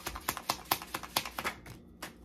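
A deck of tarot cards being shuffled by hand: a quick run of crisp card clicks, about eight to ten a second, that stops shortly before the end.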